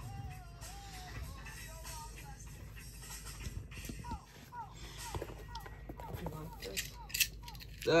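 Faint background music with a thin melody line over a low steady hum, and a few light handling taps about seven seconds in.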